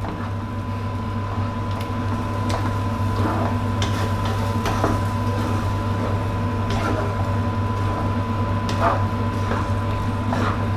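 Wooden spatula stirring thick curry sauce in a nonstick wok, with a few soft scrapes and stirring sounds over a steady low hum and a faint steady high tone; the sauce is being cooked down to thicken.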